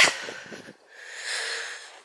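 A woman's breath drawn in audibly for about a second after a short lull; her breathing is laboured from a chest complaint.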